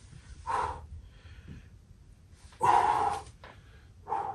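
Two forceful exhalations from a man working through a bodyweight core exercise, the second longer and louder, about two seconds apart.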